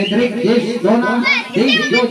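A group of children talking and calling out over one another, with several voices overlapping throughout.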